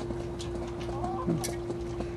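Hens clucking softly as they crowd around and peck feed from a hand, with a few sharp clicks among the calls and a steady low hum underneath.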